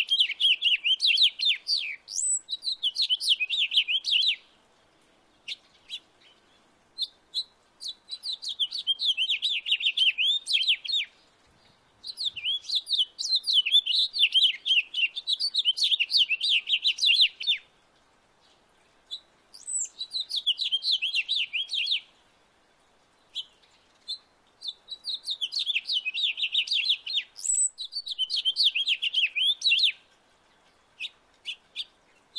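Male house finch singing: long, fast, high-pitched warbling songs, about five in a row, each lasting three to six seconds and separated by short pauses.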